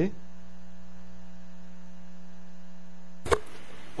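Steady electrical mains hum on the audio line, with a single sharp click about three seconds in.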